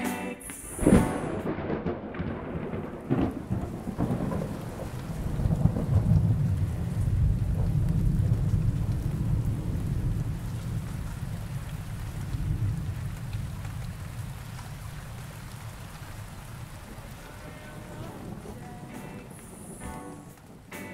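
Thunder: a sharp crack about a second in and another about three seconds in, then a long rolling rumble that swells and slowly dies away, over the steady hiss of rain.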